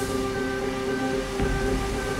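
Background music: low held tones with a short higher note repeating about twice a second, over a steady noisy wash.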